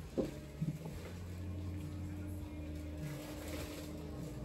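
Quiet shop background: a steady low hum with faint short sounds near the start, and a faint held tone that comes in about a second and a half in.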